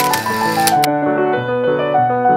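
Piano music playing, with a camera-shutter sound effect in the first second: a brief hiss ending in two sharp clicks.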